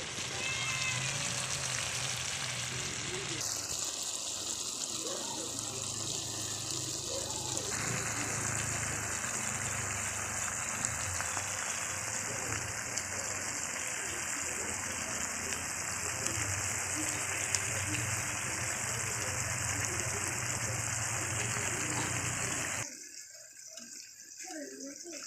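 Chicken and tomato stew simmering and sizzling steadily in a pan, a continuous hiss that cuts off suddenly about a second before the end.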